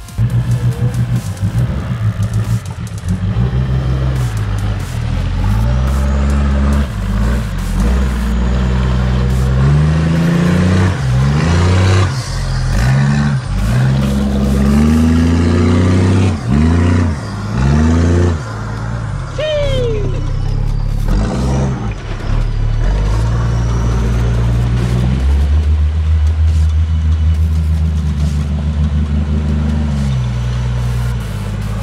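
Four-wheel-drive truck engine revving in a series of rising surges through the middle stretch while crawling through a rutted off-road track, mixed with electronic music carrying a heavy, stepping bass line.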